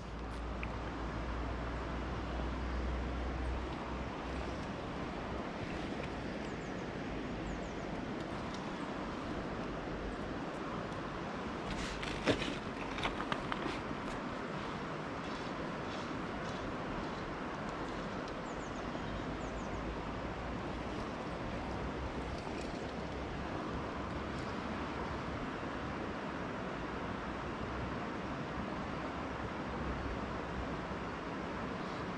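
Steady riverbank ambience: a soft, even rush of flowing water and breeze on the microphone, with a short run of clicks about twelve seconds in.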